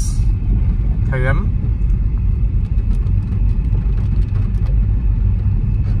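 Steady low rumble of a moving car heard inside its cabin, with a brief spoken word about a second in.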